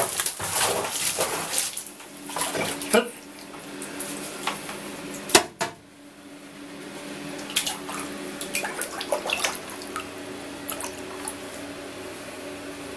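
Water splashing and sloshing in a plastic tub as a hand and small aquarium net sweep through it to catch small fish. There is a sharp knock about five seconds in, then scattered drips and small splashes over a faint steady hum.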